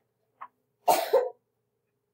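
A person coughing, a short double cough about a second in.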